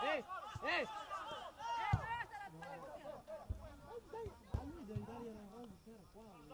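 Men shouting during a football match, with calls that rise and fall, bunched in the first two seconds and again about five seconds in. A few dull thumps sound between them.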